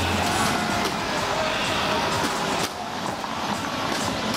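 Busy street ambience: a vehicle passes close by, over a mix of crowd chatter and music from bars.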